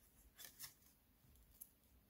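Faint rustles of paper pages being leafed through in a thick handmade journal: a few soft flicks, about half a second in and again past a second and a half.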